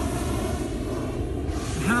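Steady rushing roar of a hot air balloon's propane burner firing as the heavy balloon climbs away, with wind buffeting the microphone.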